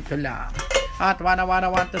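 Glass lid clinking and rattling against a ceramic casserole dish as the dish is handled on a table, with a short ringing tone from the glass. Rapid auction chanting follows.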